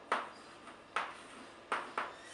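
Chalk tapping against a blackboard as letters are written: three sharp taps, each followed by a brief ring.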